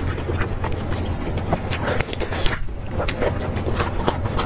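Close-miked eating of lettuce-wrapped braised pork belly: irregular wet chewing clicks and smacks, with the rustle of lettuce leaves being folded around the meat. A steady low hum runs underneath.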